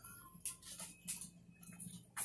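Faint scattered clicks and rustles over a low steady hum.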